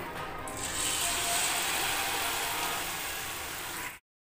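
Achu murukku batter on an iron rosette mould frying in hot oil: a dense, steady sizzle and crackle that starts about half a second in as the mould goes into the oil.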